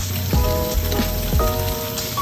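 Tofu cubes sizzling in oil in a frying pan, under background music.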